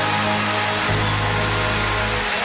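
Live stage band playing closing music, with sustained bass notes that change about a second in, under a steady wash of noise.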